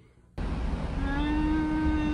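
Low, steady rumble of a car interior. From about a second in, one long, steady, held vocal note sounds over it.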